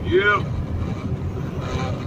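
Steady engine and road noise of a semi truck cruising on the highway, heard inside the cab.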